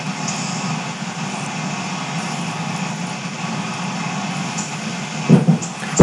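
Steady rushing background noise with a low hum underneath, from a running household appliance picked up by a call microphone; a caller thinks it might be a clothes dryer. A short voice sound comes about five seconds in.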